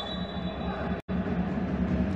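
Steady low rumble of indoor ice-arena ambience, broken by an instant of dead silence about a second in.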